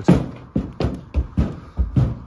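A horse's hooves striking the horsebox loading ramp as it walks up to load: a quick, uneven run of heavy thuds, about seven in two seconds.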